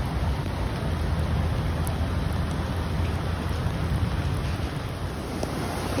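Steady rushing noise of a flooded river and falling rain, with wind rumbling on the phone's microphone.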